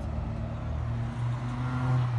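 A road vehicle's engine running close by, a low steady hum that grows louder about a second in, over street traffic noise.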